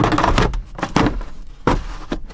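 A hard plastic Pontiac Aztek console cooler being pushed down into its center-console mount: a scraping rustle, then several sharp plastic knocks as it seats and its handle is folded down to lock it in.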